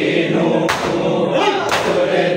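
Men chanting a mourning lament in chorus while beating their chests in unison (matam). A sharp group slap lands about once a second, twice here, on the beat of the chant.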